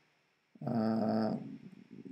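A man's drawn-out hesitation hum, a steady low 'mmm' held for under a second, starting about half a second in and trailing off.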